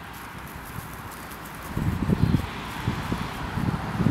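Grey squirrel gnawing on a piece of hard, dry baranka: a fine, fast run of faint crunching clicks. From about halfway, a few louder low, dull thumps come in short clusters.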